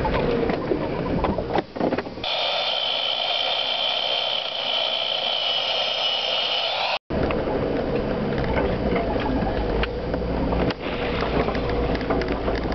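Jeep Cherokee on a rough trail, heard from inside the cab: low engine and road rumble with frequent rattles and knocks from the bodywork. From about two seconds in, an edit swaps this for a steady high-pitched whine with no low rumble for about five seconds. It cuts off suddenly and the in-cab rumble and rattling return.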